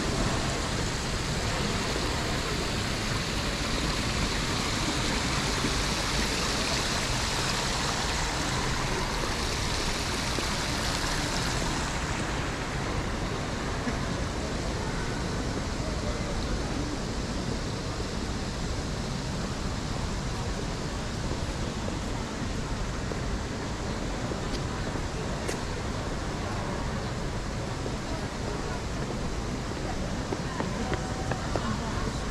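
Steady ambience of a busy railway station concourse: a continuous wash of distant crowd voices and movement, with a brighter hiss over it for roughly the first twelve seconds.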